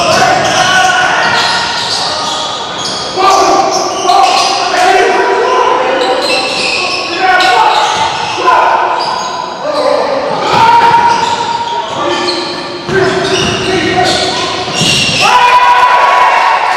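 Voices echoing around a school gym during a basketball game, with a basketball bouncing on the hardwood court.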